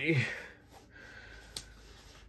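A folding knife's tight pocket clip being slid into a trouser pocket off-camera: faint fabric rustle with one light click about one and a half seconds in.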